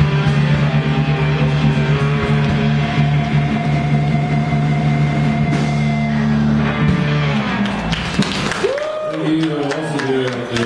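Live rock band with acoustic guitar, electric guitar, bass and drums holding a final chord that rings out and fades about seven to eight seconds in. Voices from the audience follow near the end.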